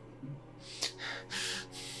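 A man taking a few short, sharp, gasp-like breaths, over soft background music of steady held low tones.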